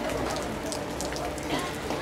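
Steady rain falling on a street puddle and wet asphalt: a constant hiss dotted with many small drop impacts.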